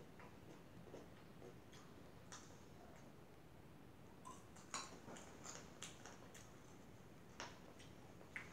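Faint close-up chewing: scattered soft mouth clicks and smacks, with a quicker run of sharper clicks in the second half.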